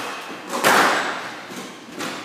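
A loud thud on a squash court a little over half a second in, trailing off in the hall's echo.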